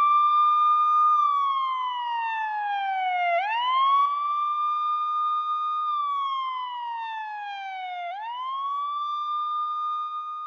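A siren wailing in slow cycles. Each cycle climbs quickly, holds its pitch for a moment, then slides slowly down, and it swoops back up twice, about three and a half and eight seconds in.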